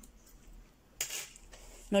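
A quiet room with one short rustling clatter about a second in, from the cross-stitch fabric and embroidery frame being handled.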